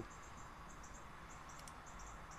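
Faint cricket chirping in short high-pitched pulses, a few a second, with a faint click about one and a half seconds in.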